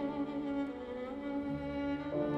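Solo violin, a c. 1830 Raffaele and Antonio Gagliano instrument, playing slow, long-held notes with vibrato. Low piano notes sound underneath, with a new bass note about one and a half seconds in.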